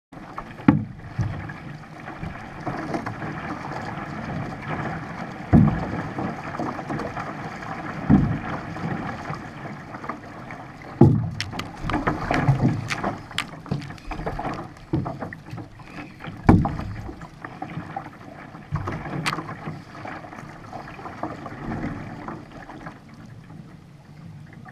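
Water rushing and splashing along the hull of a V1 outrigger canoe under paddle, heard from a bow-mounted camera, with irregular heavy thumps every few seconds as the hull meets the chop and a few sharp splashy clicks.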